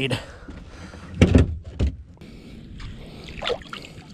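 Two heavy thumps on a plastic kayak, a little over a second in and again about half a second later, with lighter knocks and small rattles around them from magnet-fishing gear and a catch being handled on board.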